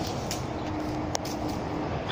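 Steady low outdoor background noise with a faint steady hum through it, broken by a few light clicks and one sharp click about a second in.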